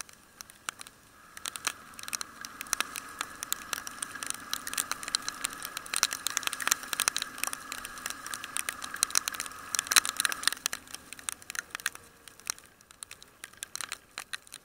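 Raindrops striking the motorcycle's camera in dense, irregular ticks and crackles, over a faint steady drone from the moving bike that fades out near the end.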